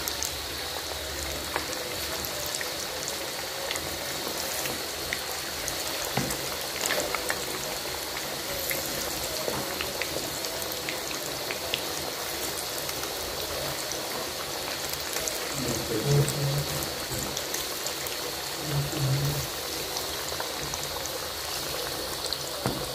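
Battered chicken pieces deep-frying in hot oil in a kadai: a steady sizzle with scattered crackles and pops.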